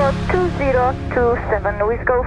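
Voices over a radio or intercom against the steady drone of a light aircraft's piston engine heard inside the cabin, with music also playing.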